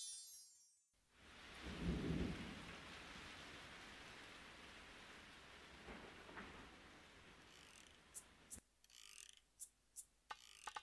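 Rain falling steadily, with a low roll of thunder swelling about two seconds in. The rain cuts off abruptly near the end as music begins.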